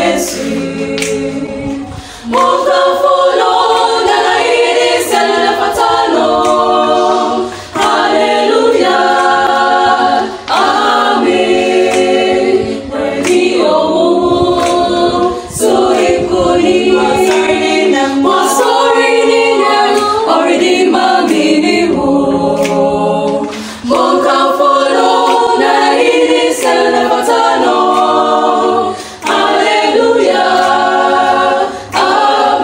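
A choir singing unaccompanied, in phrases of a few seconds with brief breaks between them.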